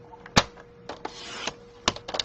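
Sliding-blade paper trimmer cutting a strip of patterned paper: a sharp click as the clear rail comes down, a brief scrape of the blade running through the paper, then another sharp click.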